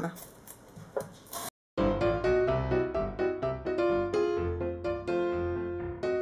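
Piano music plays, its notes struck one after another. In the first second and a half there are a few knocks of a chef's knife chopping a red onion on a wooden cutting board, followed by a short break in the sound.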